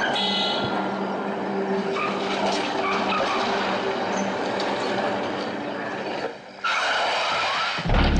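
An SUV driving, heard as a steady rush of tyre and road noise. The sound drops out briefly about six seconds in, then returns.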